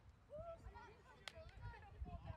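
Faint, indistinct voices of people talking at a distance, with one sharp click about a second and a quarter in.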